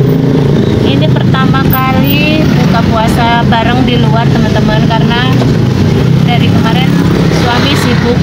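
Car engine hum and tyre noise on a wet road, heard inside the cabin while driving through traffic, with high-pitched voices talking over it throughout.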